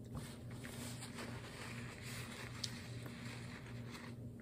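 Quiet room tone with a steady low hum and a few faint small clicks and handling sounds from eating at a table.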